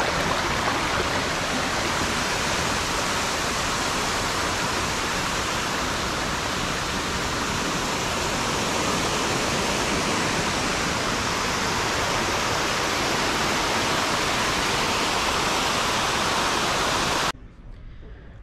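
A shallow stream rushing over rock ledges and small waterfalls, a steady, even rush of water that stops abruptly near the end.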